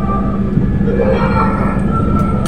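Steady low rumble and hum of an airliner cabin, loud and unbroken, with a faint steady tone over it.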